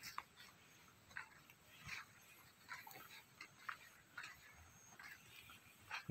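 Near silence, with faint short crunches about once a second, like footsteps on a forest floor of fallen needles.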